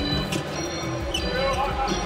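A basketball being dribbled on a hardwood court, several bounces, with music playing underneath.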